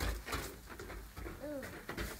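A person's drawn-out 'ooh' of wonder about one and a half seconds in, over low rumbling handling and wind noise on a phone microphone.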